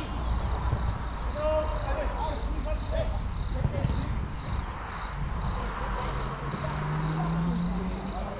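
An insect chirping high and evenly, about twice a second, over a steady outdoor rumble and the faint shouts of distant players. Near the end a low engine hum rises slightly in pitch.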